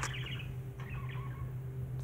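A sharp click at the very start, then faint, short chirps from a pet conure, over a low steady hum.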